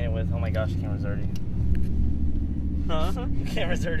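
Steady low rumble of a car, heard from inside the cabin, with voices talking over it.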